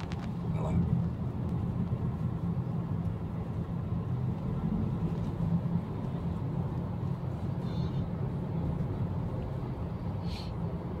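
Steady low rumble of a road vehicle, with no change in pitch or level.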